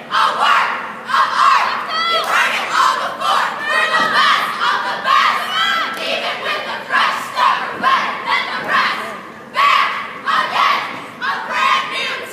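Cheerleading squad yelling a cheer in unison: short, rhythmic group shouts, about two or three a second, by girls' voices.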